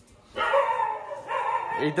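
A chained dog barking and whining: two drawn-out cries, then a short yelp at the end.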